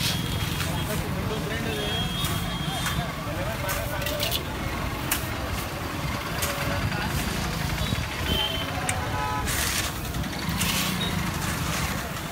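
Busy street ambience: background voices over a steady low rumble of traffic, with occasional short scrapes and knocks of shovels spreading loose fill on the road.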